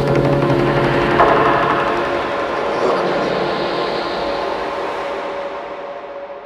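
Outro of a neurofunk drum and bass track: a dense, noisy synth wash with a few held tones and no beat, fading out slowly.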